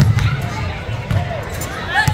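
Basketball being dribbled on a hardwood gym floor, a run of repeated bounces, with voices in the gym.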